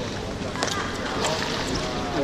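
Water splashing and sloshing in a swimming pool as swimmers move through it, with indistinct voices in the background.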